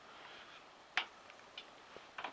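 Quiet background with one sharp click about halfway through, followed by a couple of faint ticks.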